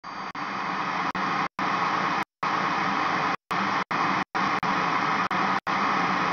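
Television static hiss, a steady noise that cuts out abruptly several times in short silent breaks.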